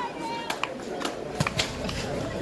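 Distant voices of players and spectators across an open playing field, not clearly worded, with a few short sharp knocks.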